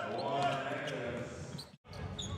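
Basketball game court sound: indistinct voices with a few short knocks on the court. It drops out abruptly near the end at an edit.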